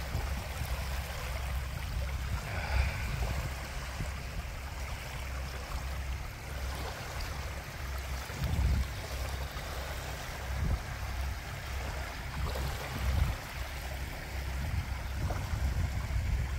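Small waves lapping and washing onto a sandy shore, with a low, uneven rumble underneath that swells now and then.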